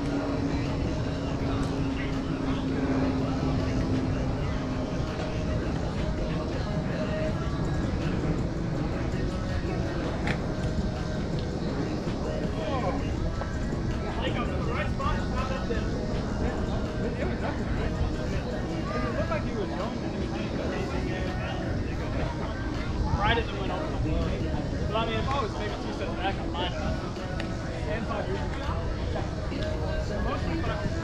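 Indistinct voices of people talking and calling out over a steady low background rumble, with a droning tone in the first few seconds that fades away.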